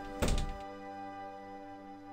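A door thudding several times in quick succession just after the start, over sustained background music chords that carry on steadily afterwards.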